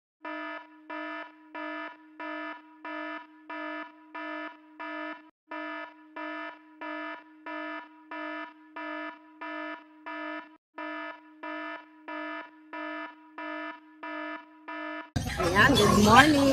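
An electronic alarm-style beep repeating evenly about twice a second, a steady mid-pitched tone with a buzzy edge. About a second before the end it stops, and outdoor crowd noise and a man's voice take over.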